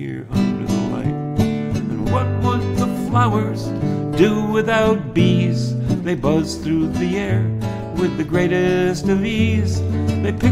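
Nylon-string classical guitar played solo: a picked melody over held bass notes in an instrumental passage between sung verses.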